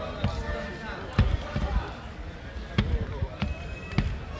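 Several dull thumps and knocks on gym mats, with voices in the background; the sharpest come about a second in and near three seconds.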